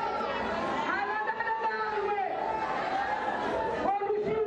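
A woman singing taarab into a microphone, holding long notes that waver and glide in pitch, over a background of chattering voices.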